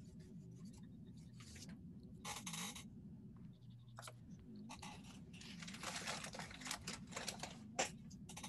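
Crayon scribbling on paper: faint scratchy strokes, a short run about two seconds in and a longer run from about four and a half seconds to near the end.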